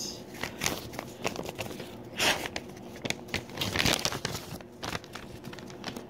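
An envelope being opened and handled by hand: a run of paper crinkles and rustles, with louder tearing about two seconds in and again near four seconds.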